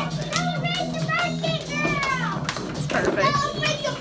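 Young children's voices and chatter over music with a steady, pulsing bass beat.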